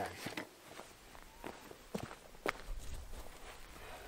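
Footsteps through grass with a few light clicks and knocks as he handles his shotgun, the sharpest knock about two and a half seconds in; a low rumble joins near the end.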